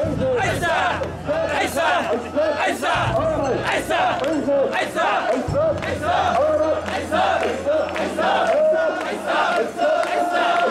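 Mikoshi bearers chanting together as they carry the portable shrine, many voices shouting short calls in a steady rhythm.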